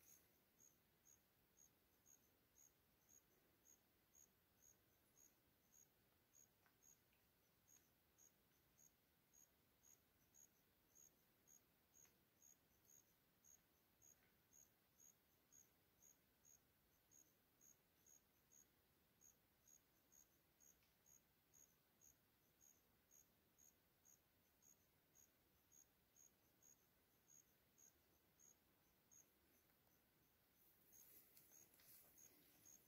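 Faint insect chirping in otherwise near-silent woods: a single high note repeating evenly about twice a second.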